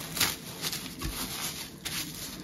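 Cling film crinkling and rustling under gloved hands as it is smoothed around a glass jar, in scattered short crackles.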